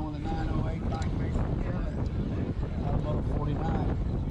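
Wind rushing over a BMX bike's handlebar-mounted camera microphone as the bike rolls along a dirt race track, a steady low rumble of wind and tyre noise, with a faint voice over it.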